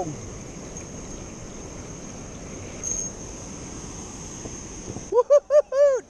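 Steady rush of flowing spillway water and wind on the microphone, with a faint steady high-pitched whine over it. Near the end, a voice makes four short high-pitched calls.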